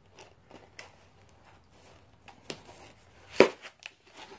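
Packaging being handled and opened around a sealed mug: scattered small clicks and crackles, with one sharp knock about three and a half seconds in and a couple of lighter ticks just after.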